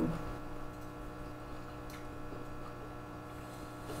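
Steady low electrical mains hum, with one faint click about two seconds in.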